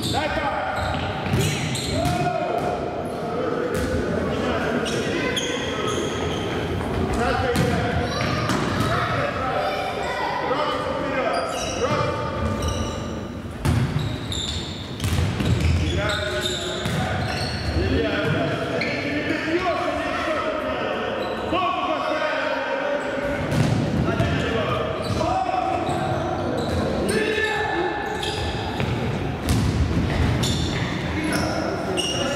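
Players' voices shouting and calling throughout, with the thuds of a football being kicked and bouncing on a wooden gym floor, all echoing in a large sports hall.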